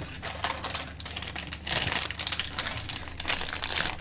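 A snack wrapper being handled and crinkled, in irregular crackles that grow louder about halfway through.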